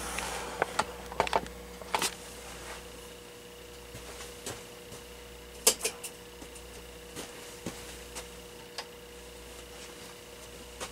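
Handling noise: scattered clicks and knocks as a camera is moved and set steady, most of them in the first two seconds and a louder one about halfway through, over a faint steady hum.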